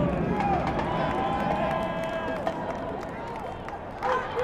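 Crowd of voices shouting and cheering just after a marching band's number ends, with scattered claps; the voices fade toward the end.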